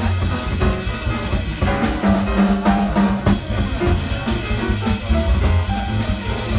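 Live jazz combo playing: grand piano with drum kit and cymbals, over a strong low bass line.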